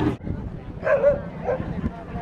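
A dog gives a short yip about a second in, then a fainter one half a second later, over the chatter of people around the show ring.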